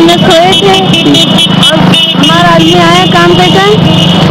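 A woman talking continuously, with road traffic going by behind her.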